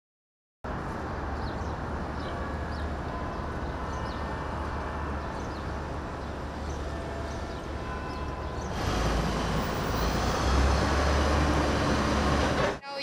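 City street traffic: a steady hum of passing vehicles with a low engine rumble, starting suddenly after a brief silence and growing louder about nine seconds in.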